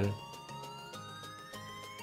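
Quiet electronic background music, with a synth tone rising steadily in pitch throughout.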